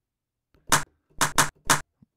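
A drum sampler playing a short percussive one-shot made from a field-recorded mouse hit, roughened by MPC60-style sampling emulation. It is triggered four times, as short sharp hits with the middle two close together.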